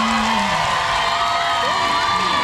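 Large crowd cheering and screaming, a steady roar with high held shouts and whoops.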